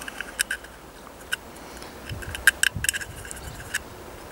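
Light, irregular metallic ticks as a needle is pushed into and out of the jet holes of a brass Trangia spirit burner, clearing them of blockages.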